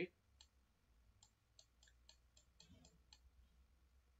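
Faint, irregular clicks from a computer mouse, about ten in all, over near silence.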